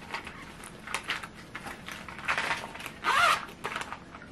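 A small clear vinyl pouch being zipped closed: a run of short scratchy zipper strokes with plastic crinkling, the loudest pull a little after three seconds in.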